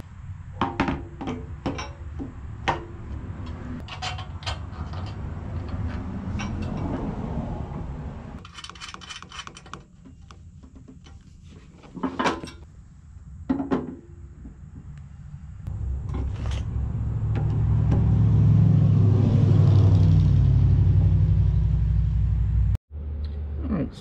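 Clicks, knocks and clatter of plastic body panels and small metal hardware being handled while a toy pedal tractor's seat is fitted to its body. From about two-thirds of the way in, a low rumble rises and cuts off suddenly just before the end.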